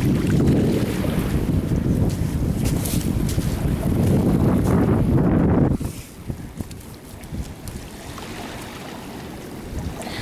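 Wind buffeting the microphone in a loud low rumble, over small waves washing on a sandy shore; the wind noise drops away suddenly about six seconds in, leaving the quieter wash of water and a few light clicks.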